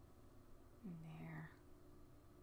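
Near silence, broken about a second in by one short, soft vocal sound from a person, a brief murmur or hum lasting about half a second.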